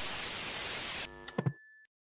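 Television static hiss that cuts off about a second in, followed by a couple of quick clicks and a brief high tone as the set goes dark.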